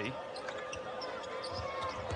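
A basketball being dribbled on a hardwood court, with faint scattered knocks over the low noise of an arena crowd.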